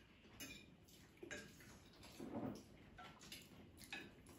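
Faint, scattered clicks and clinks of a fork and chopsticks against plates at a dinner table, with a soft low murmur about halfway through.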